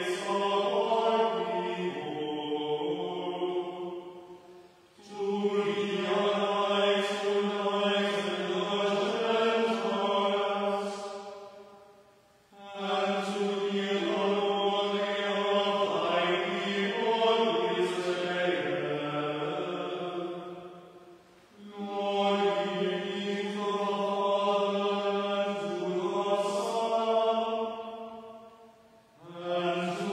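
A small group of voices chanting together from books in long sustained phrases of about seven seconds each, with brief pauses between phrases, echoing in the church.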